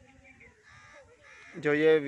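A bird calling faintly in the background during a pause in talk, then a man's voice starts up near the end.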